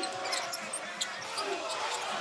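Game sounds on an indoor hardwood basketball court: a basketball bouncing in a series of dribbles, with short sneaker squeaks over a steady arena crowd murmur.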